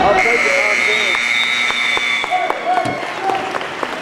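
A high, steady signal tone held for about two seconds from just after the start, stopping the wrestling action. Crowd voices and a few sharp claps sound around it.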